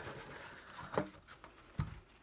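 Cardboard jigsaw puzzle box being opened by hand: soft scraping and rustling, with two light knocks, about a second in and near the end.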